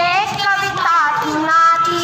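A girl singing in Hindi, with long held notes that slide between pitches.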